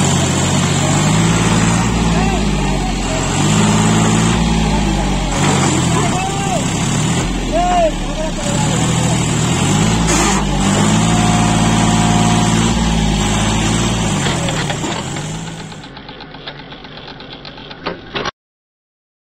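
John Deere 5105 tractor's three-cylinder diesel engine working hard under load as it drives a wheel up out of a dug pit in loose soil. The engine pitch rises and falls repeatedly. It drops away shortly before the end.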